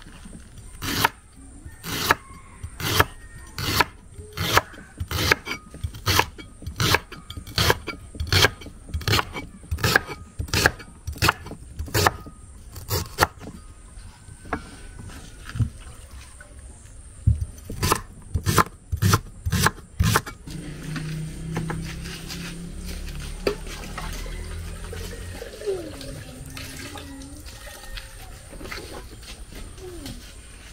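Knife chopping green plantain on a wooden cutting board, sharp strokes about two a second, with a short pause and a few more strokes before the chopping stops. A low steady hum with a wavering tone follows.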